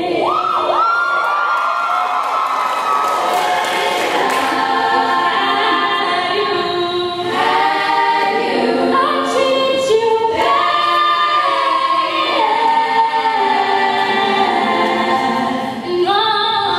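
A girls' a cappella group singing in close harmony into microphones, several voices holding chords that shift together.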